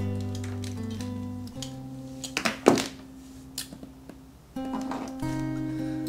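Background acoustic guitar music with slow, held notes, and a few sharp clicks or knocks about two and a half seconds in.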